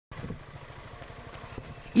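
A low, steady engine rumble with a fast, even pulse, like a motor vehicle running nearby, under faint street noise.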